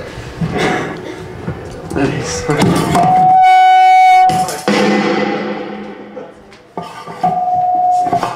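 Low talk and stage noise, broken about three seconds in by a loud held instrument note lasting just over a second, with a second, shorter held note at the same pitch near the end.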